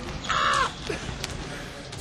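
A man's brief vocal outburst, a loud, noisy exclamation lasting about half a second a little after the start, among laughter and joking in a gym.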